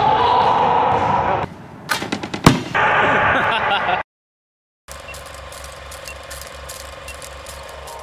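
Echoing gym noise of voices and basketball play with a few sharp bangs, the loudest about two and a half seconds in. The sound then drops out for about a second, followed by background music with a steady low beat.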